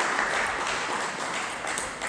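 Applause in a large hall slowly dying away, with a few faint table tennis ball clicks near the end.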